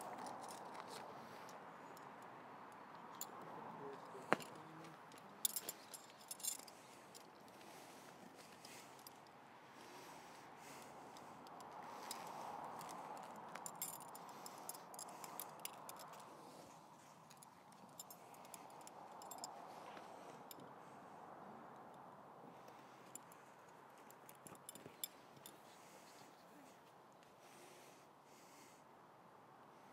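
Faint scattered light clicks and small metallic clinks over a low, steady outdoor background.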